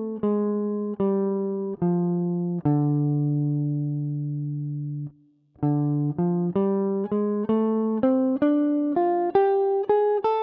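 Gibson ES-137 Custom electric guitar played clean, picking the D minor blues scale in 5th position one note at a time. It descends to the low D, which rings for about two and a half seconds, stops briefly, then climbs back up at about two notes a second.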